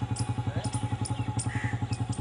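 A boat's engine running steadily while under way, with an even, rapid thudding beat of about six or seven pulses a second.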